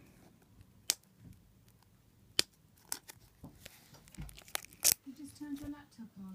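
Plastic packaging being torn open on a boxed CD album: a few sharp, separate crackles and snaps a second or so apart, with a dull knock a little after four seconds in.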